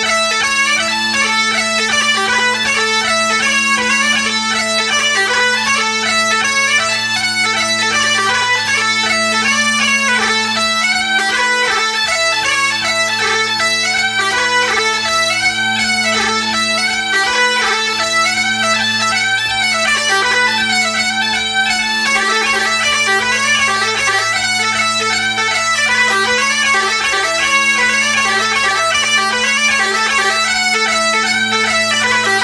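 Great Highland bagpipe playing a lively tune, the chanter's quick ornamented melody running over the steady hum of the drones.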